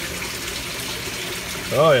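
Steady rush of water flowing in an aquaponics tank, with a short laugh near the end.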